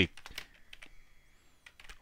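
Computer keyboard keystrokes: a quick run of light key clicks through the first second, then a couple more near the end.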